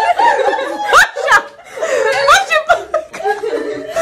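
Women laughing and chattering together, with short bursts of laughter about a second in.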